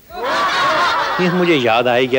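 Audience laughter, then a man's voice holding one long, level vowel about halfway through.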